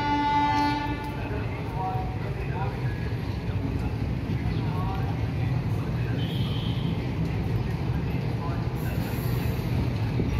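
A train horn sounding one held note that ends about a second in. Then the steady low rumble of passenger coaches rolling slowly out of the station.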